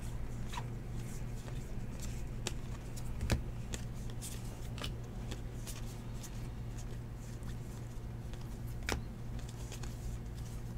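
A stack of baseball trading cards flipped through one at a time by hand, the card stock sliding and flicking in quick, irregular swishes. There are two sharper snaps, one about a third of the way in and one near the end, over a steady low hum.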